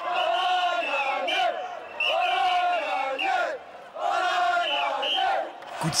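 A crowd of celebrating football supporters chanting in unison: three shouted phrases, each about a second and a half long, with short breaks between them.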